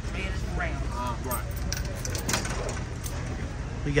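Busy store's background sound: faint talk of other people in the first second or so over a steady low hum, with a few light clicks.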